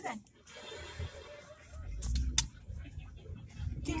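Low rumble of a car cabin with a few small clicks and one sharp tap about two and a half seconds in.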